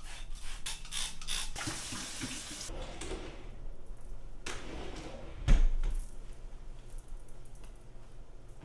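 Water running briefly from a tap, a rushing hiss of about a second after a few handling clicks, then fading. About five and a half seconds in comes a single loud thump, followed by quieter handling noises.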